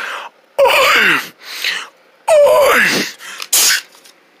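A person's voice making two long, breathy moans that each slide down in pitch, with a short hissing burst near the end.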